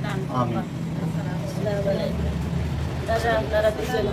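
A woman talking in short phrases over a steady low rumble, like an idling engine, that grows louder in the middle.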